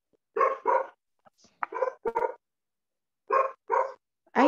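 A dog barking in three pairs of short barks, each pair about a second and a half after the last.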